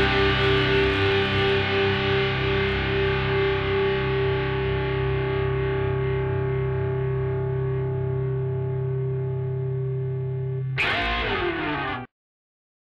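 The song's final distorted electric guitar chord is held and rings out, slowly fading. About 11 seconds in, a short noisy sound with a falling pitch comes in, and then everything cuts off suddenly.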